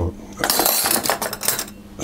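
Metal cutlery jangling and clinking for about a second as a fork is fetched, after a single click at the start.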